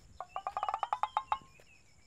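A bird calling: a quick run of about a dozen short, clear notes lasting about a second, followed by a few faint high chirps.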